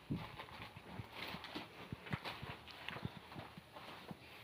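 Rough stone specimens being handled, clacking and knocking together in a string of short, irregular, faint knocks, with newspaper rustling among them.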